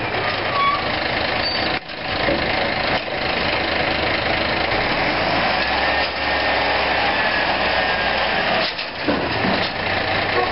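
Diesel engine of a Maxon Legal One automated side-loader garbage truck running steadily as the truck pulls up to the curb and its side arm reaches out, grabs a cart and lifts it, with a faint steady whine in the middle.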